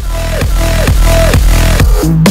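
Electronic dance music that starts abruptly, with a heavy bass line and a short falling synth tone repeating about every half second.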